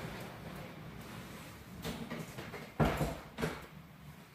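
A few dull knocks and bumps, the loudest about three seconds in, typical of handling noise from a handheld camera.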